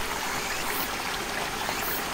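Steady, even rushing noise like running water, holding level throughout.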